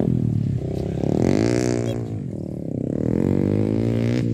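Dirt-bike engine revving as the motorcycle rides the track: the revs climb about a second in, drop off around two seconds, and climb again near the end.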